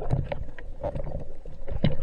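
Water sloshing and bubbling around an underwater camera just below the sea surface: irregular crackles and pops over a low rumble.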